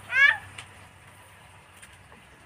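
A single short, high-pitched cry lasting about a quarter of a second, right at the start.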